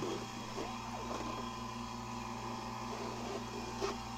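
Steady mechanical hum of a marine air-conditioning unit running in a yacht's engine room.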